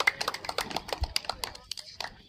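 Many boots stepping on concrete as a squad of security guards marches: a dense, irregular run of sharp clicks that thins out near the end.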